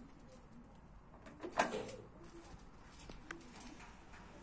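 Pigeons cooing softly, with one short, louder knock about a second and a half in.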